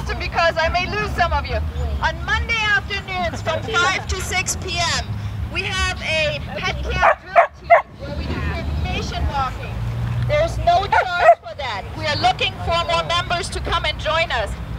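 A dog barking loudly a few times, twice in quick succession just past the middle and once more later, over people chatting.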